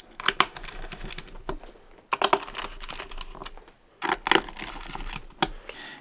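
Small Phillips screwdriver driving the screws of a Lenovo ThinkPad P1 Gen 4's bottom cover back in: clusters of light clicks and ticks from the bit and screws against the plastic cover, with short pauses between screws.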